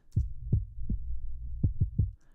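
Audio playing through OTT with only the low band soloed below 88 Hz, so only the sub-bass is heard: a steady deep bass with about six short low thumps.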